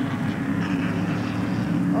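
Race car engines running on the track, a steady low drone.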